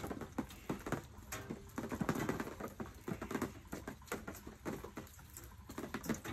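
Irregular patter of raindrops hitting close to the phone's microphone, scattered sharp taps with some handling rustle.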